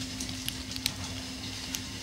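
Sausages frying on a hot dog stand's griddle, a faint sizzle with a few scattered crackles, over a steady low hum.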